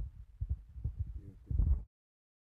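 Irregular low, dull thumps and rumble on a handheld phone microphone, the handling and footfall noise of a phone carried while walking. The sound cuts off abruptly near the end.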